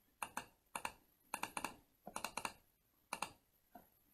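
Sharp clicks of a computer mouse in about six short clusters, mostly quick doubles and short runs, as folders and a file are clicked open and selected.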